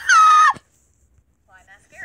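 A girl's shrill mock scream, "ah!", rising in pitch, then held and cut off about half a second in. Faint talk follows.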